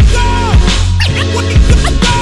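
Hip hop beat with no vocals: heavy kick drums about every half second, under DJ turntable scratching.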